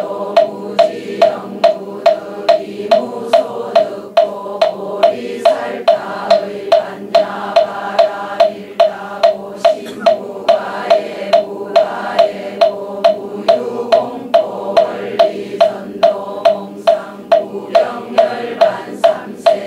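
A moktak (Buddhist wooden fish) is struck in an even beat of about two and a half strokes a second. Under it a congregation chants in unison.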